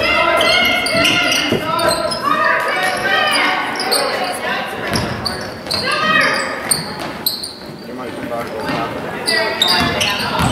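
Basketball game play on a hardwood gym floor: the ball bouncing repeatedly, sneakers squeaking in short chirps, and players and spectators calling out in the gym.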